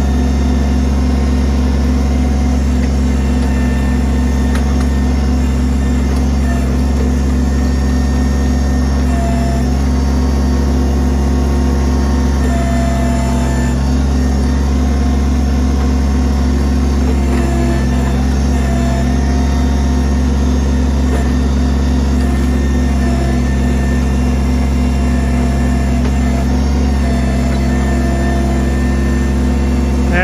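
Kubota BX23S tractor-backhoe's three-cylinder diesel engine running steadily and loud while the hydraulic backhoe works a tree stump loose.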